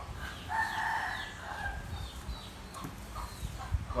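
A rooster crowing once, starting about half a second in and held for just over a second.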